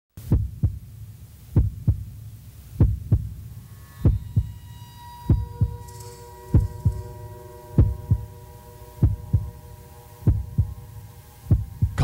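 Slow heartbeat sound effect: paired low thumps, lub-dub, about once every 1.25 seconds. A steady hum of several held tones joins about four seconds in.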